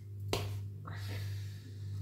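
Hands skinning a hare, pulling the hide off the carcass: one sharp snap about a third of a second in and a softer tearing rasp near the middle, over a steady low hum.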